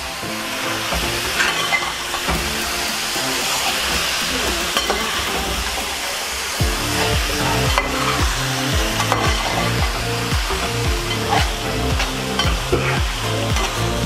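Chicken masala frying and sizzling in a metal pot as it is stirred and turned with a metal spatula, with occasional scrapes and knocks of the spatula against the pot. Background music runs underneath, and a steady beat comes in about halfway through.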